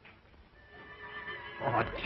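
Soft film underscore of long held notes. Near the end a voice says a drawn-out, wavering 'Oh'.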